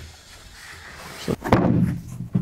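A quiet stretch, then a small knock and a sharp wooden thud about one and a half seconds in: a 2x4 board being dropped onto a plywood sheet.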